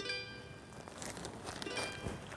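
Background music on a plucked string instrument, with a chord ringing out and fading at the start and another struck near the end.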